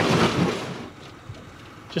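A boat's hull scraping and rumbling up onto the shore as the bow is pulled up, a short burst of about half a second that fades quickly.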